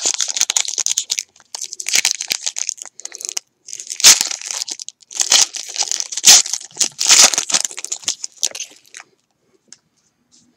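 A baseball card pack's wrapper being torn open and crinkled by hand, in irregular crackling bursts.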